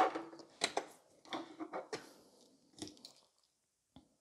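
Handling noise from plastic nail tips and tools on a work table: a sharp knock at the start, then a few lighter clicks and rustles over the next three seconds.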